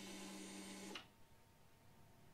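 Harley-Davidson touring motorcycle's fuel pump priming after the ignition is switched on: a faint, steady hum that stops about a second in.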